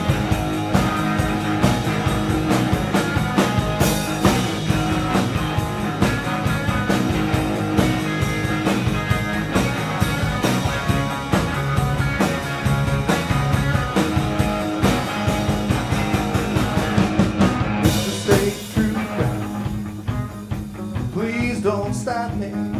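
Live rock band playing an instrumental stretch of the song: electric guitars over a drum kit and bass with a steady beat. About 18 seconds in there is a sudden crash and the band thins out, with gliding, bending notes near the end.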